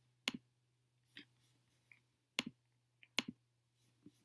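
A few short, sharp clicks spaced irregularly, two close together about three seconds in, over a faint steady low hum.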